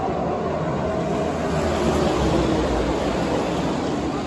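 A pack of NASCAR Cup Series stock cars' V8 engines running at speed on the oval, a dense, steady engine noise with a slight fall in pitch.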